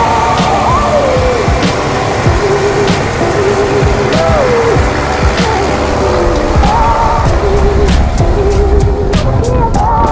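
Background music: a song with a wavering, gliding lead melody over a steady beat and bass.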